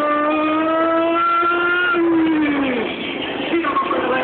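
Motorcycle engine held at high revs, the pitch creeping slightly up for about two seconds, then falling away over about a second as the throttle closes.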